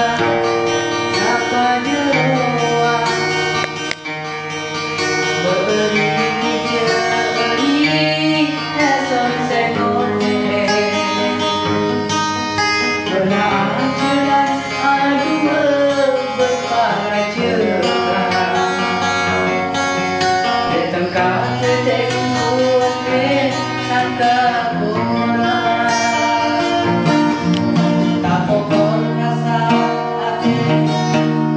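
A Bawean-language song played by a band, with plucked guitar to the fore.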